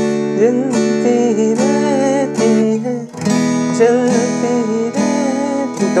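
Acoustic guitar strummed in a steady rhythm, moving from one chord to another about three seconds in, with a man singing the melody along with it.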